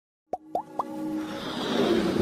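Animated logo intro sound effects: three quick rising pops about a quarter second apart, then a whoosh that swells in loudness over a held low musical note.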